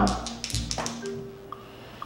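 A pair of dice rolled onto the table, a quick run of rattling clicks in the first second that stops about a second in. Faint sustained tones hang underneath.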